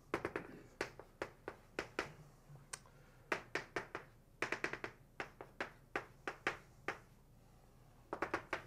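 Chalk tapping and clicking on a blackboard while writing: a run of short, sharp taps in uneven clusters, pausing shortly before the end.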